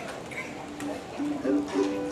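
Plucked acoustic string instruments playing a few soft, short notes, mostly repeated at the same pitch, between songs.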